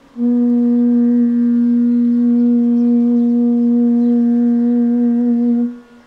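Bass bansuri (long bamboo transverse flute) holding one long, steady low note for about five and a half seconds, breaking off shortly before the end.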